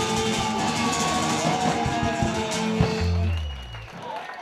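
Live band with electric and acoustic guitars, bass and drum kit playing the close of a song; about three seconds in it lands on a last low bass note that dies away.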